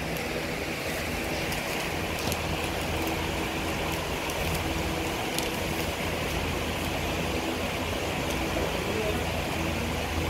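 Steady background hum and hiss with faint voices.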